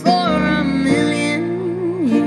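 A woman singing a slow ballad line with a long held, wavering note, over sustained electric keyboard chords.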